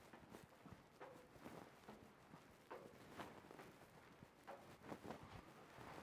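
Faint footsteps going down stone stair steps, soft irregular treads about one every half second to second, against near silence.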